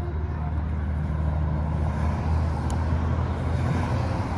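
Steady low outdoor rumble, with one brief high click near the end.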